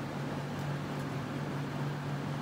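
Steady low hum with an even airy hiss from running cooling fans, unchanging throughout.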